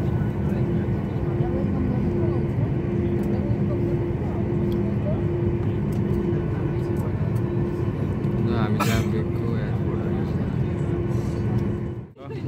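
Jet airliner engines running, heard inside the passenger cabin as the plane taxis: a steady rumble with a low hum and a higher tone that pulses on and off.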